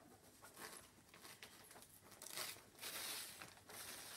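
Faint crinkling and rustling of a fabric appliqué being peeled off a Teflon appliqué mat, louder from about two seconds in.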